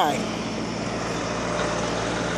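Steady low hum of an idling truck engine, even and unchanging.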